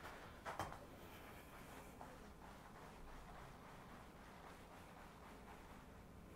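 Near silence: quiet room tone, with a couple of brief soft clicks about half a second in.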